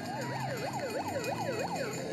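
A siren-like wailing tone sweeping rapidly up and down, about four times a second, in a fast yelp pattern over a steady background.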